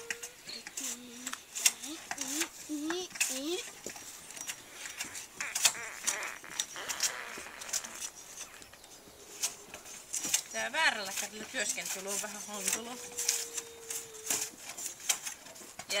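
A curved hand blade scraping bark off a wooden pole in repeated short strokes, with sharp clicks and scrapes all through.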